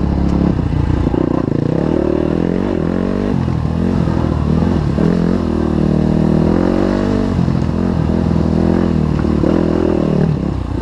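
Dirt bike engine running under throttle, its pitch rising and falling again and again as the throttle is worked on and off.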